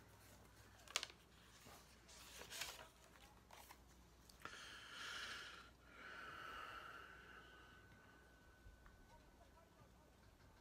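Near silence: quiet room tone with a soft click about a second in and a faint hiss that swells and fades between about four and a half and eight seconds.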